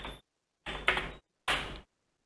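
Two key presses on a computer keyboard, short clacks a little under a second apart.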